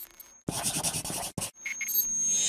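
Scratching sound effect in an animated logo intro: a dense scratchy stretch of just under a second, a brief break, then short scratches and a swell that rises near the end.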